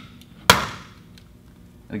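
Bryant Housewise smart thermostat pressed onto its wall back plate, snapping into place with one sharp plastic click about half a second in.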